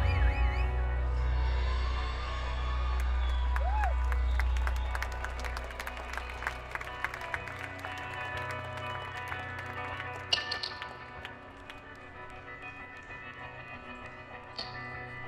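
A rock band's last chord and low bass drone ringing out and fading over the first few seconds, with the audience applauding and whistling. A steady keyboard tone lingers underneath as the clapping dies away.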